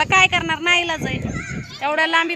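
Speech: a woman talking.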